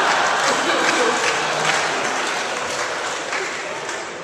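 Audience applause mixed with laughter, loudest at the start and dying away gradually.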